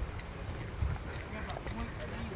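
Footsteps on a dirt and gravel trail, a series of steps, with faint voices near the end.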